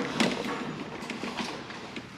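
A few light knocks and clicks from a loaded shopping cart being pushed and turned, the sharpest one near the start.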